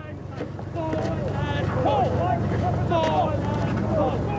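A boat's motor running steadily, with several men's voices shouting and calling over it.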